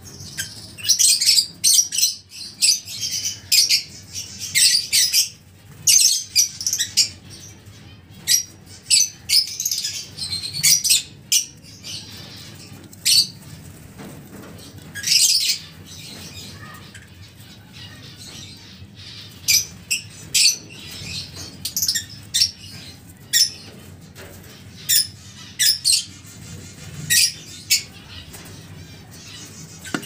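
Lovebirds calling: many short, shrill squawks and chirps in quick clusters, thinning out for a few seconds past the middle and then picking up again.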